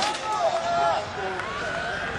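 Indistinct voices shouting and calling out, with a short click right at the start.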